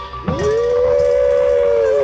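Live 1970s rock band music: a single held, pitched tone swoops up from low about a third of a second in and then holds steady.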